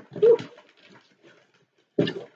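A woman's short, rising "ooh", followed by faint rustling and crinkling of packing material being handled inside a cardboard box, which fades away near the end.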